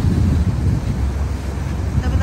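Small motor launch under way: a steady low rumble of its engine and hull, with wind buffeting the microphone.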